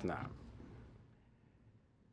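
The tail of a man's spoken word fading in the room's echo, then near silence: room tone in a lecture hall.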